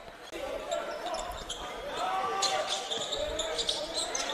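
Indoor basketball court ambience: indistinct voices of players and spectators echoing in the hall, with a basketball bouncing on the hardwood floor.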